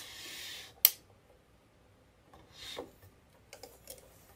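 Quilt fabric rustling and sliding at a sewing machine: a short hiss as the cloth is pulled, a sharp click just under a second in, then faint rustles and light ticks as the quilt top is handled.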